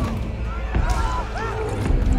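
Film action sound mix: short cries and yells over a deep rumble of destruction, with a thud about three-quarters of a second in and another near the end.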